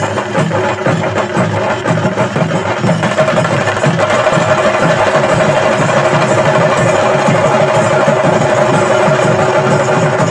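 Fast, loud percussion music of rapid drum strokes, with a steady high tone joining about four seconds in.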